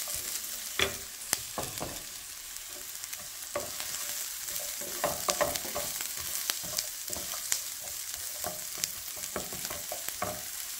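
Diced potatoes, green beans and onion sizzling in oil in a skillet, with a wooden spatula scraping and knocking against the pan now and then as they are stirred, a cluster of knocks about five seconds in.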